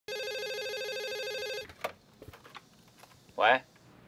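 Electronic landline telephone ringing with a warbling trill that stops abruptly after about a second and a half, followed by a clunk as the handset is picked up and a few faint handling clicks.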